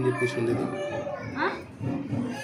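Speech: a voice talking, with a brief rising high-pitched vocal sound about a second and a half in.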